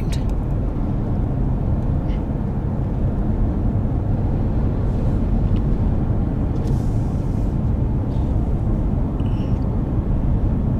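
Steady road noise heard inside a moving car's cabin: a constant low rumble of tyres and engine.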